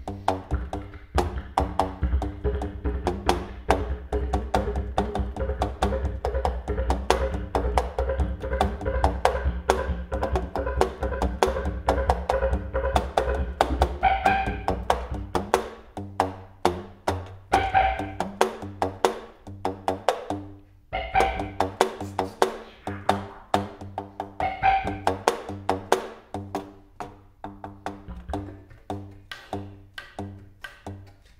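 Didgeridoo and contrabass flute improvising together: a low drone under a fast, steady stream of percussive clicks. About halfway through the drone thins out, and short higher notes come back every three to four seconds.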